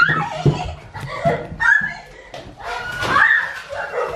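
Short bursts of laughter and exclamations in a small room, with a few sharp knocks in between.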